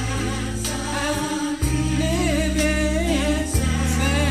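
Gospel music: singing over sustained bass and keyboard chords, the chord changing about one and a half seconds in and again near the end, with a light steady beat.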